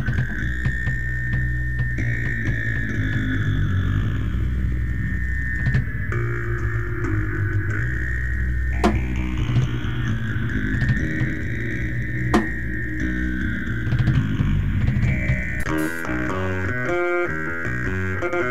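Improvised psychedelic jam of electric guitar and drums: a sustained guitar tone that slowly wavers up and down over a heavy low rumble, with a few sharp drum hits. About two seconds before the end it changes to quick picked guitar notes.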